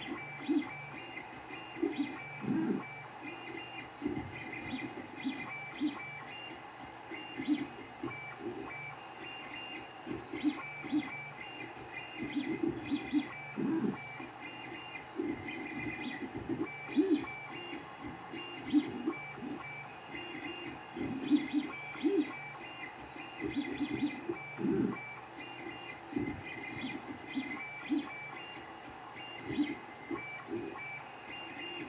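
Creality 3D printer running a print, its stepper motors sounding in short tones and quick irregular pulses as the print head moves.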